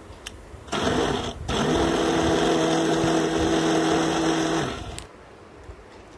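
A 1000 W electric mixer grinder's motor and blades running, grinding boiled vegetables to a purée in a steel jar. There is a short burst of under a second, a brief stop, then a steady run of about three seconds that winds down.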